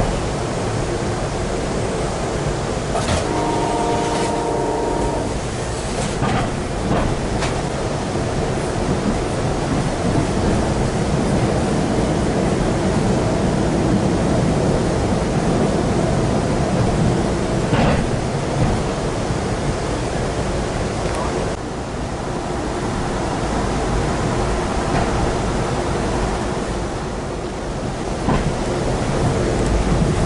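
Interior running noise of the Amtrak Coast Starlight rolling at speed: a steady rumble of wheels on rail with a few sharp knocks. A horn chord sounds for about two seconds, about three seconds in.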